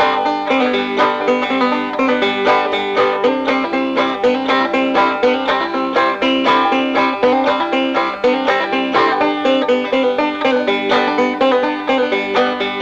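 Solo five-string banjo picked in a quick, steady stream of notes. It is played left-handed with the banjo upside down, so the thumb string sits at the bottom and she picks only four strings.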